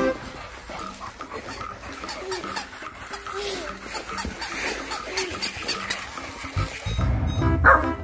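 Chow chow puppy giving a few short play barks and yips while worrying a plush toy. Near the end a louder burst of other sound comes in.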